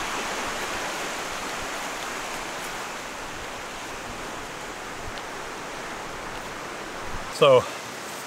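Steady rushing of a rocky stream's rapids, an even hiss that eases off slightly over the stretch.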